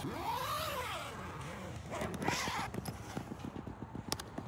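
Fabric rustling and a short zip as the canvas window of a van's pop-top tent is handled, with small clicks and a brief swish about halfway through.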